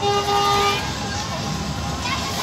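A car horn sounds once, a steady note lasting under a second at the start, over crowd chatter and low engine noise from cars driving slowly past.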